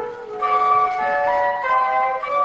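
A small ensemble of flutes playing together in harmony: several held notes sound at once and move step by step, with a brief break between phrases just after the start.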